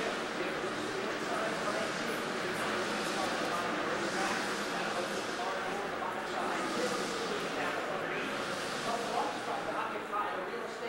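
Indistinct chatter of many people talking at once in a room, with no single voice standing out.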